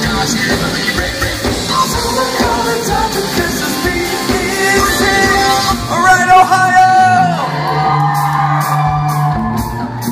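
Live pop-rock band playing with a singer through a PA in a large hall. About six seconds in, a long held sung note rises over the band. Then the drums stop and a sustained chord with a steady bass note rings on.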